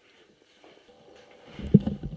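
Hands handling a CNC touch probe while its breakaway stylus is reconnected: faint rustling, then a few dull knocks and bumps in the last half second, one near the end the loudest.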